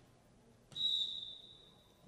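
Volleyball referee's whistle blown once to authorise the serve: a single high, steady tone that starts suddenly about two-thirds of a second in and fades away over about a second.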